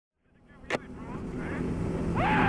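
Motorcycle riding sound fading in from silence: a Suzuki V-Strom 650's V-twin engine running under wind rush on the rider's camera microphone, with a single sharp click just under a second in.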